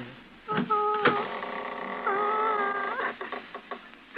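Radio-drama sound effect of a door creaking open: a long wavering squeal with a sharp click near its start, followed by a few short knocks like footsteps on wooden boards.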